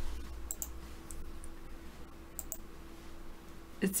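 A few faint, scattered clicks at a computer, over a low steady hum.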